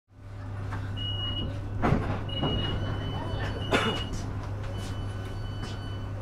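Interior sound of a Class 458/5 electric multiple unit: a steady low hum with a thin high-pitched whine that comes and goes. Two sharp knocks, about two and four seconds in, are the loudest sounds.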